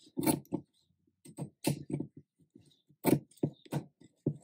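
Pinking shears cutting through cotton lining fabric, a series of short crunching snips in three quick runs: two near the start, four in the middle and three near the end.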